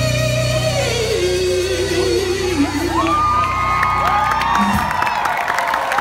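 The last sung note of a live song slides downward over a sustained band chord. Crowd cheering and whoops rise from about halfway, and the band's chord cuts off near the end.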